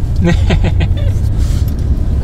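Low, steady road and engine rumble inside a moving car's cabin, with laughter over it in the first second.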